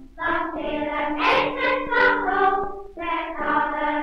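Children's choir singing a Dutch song, played from a circa-1930 shellac 78 rpm record, in phrases with brief breaks at the start and near three seconds in.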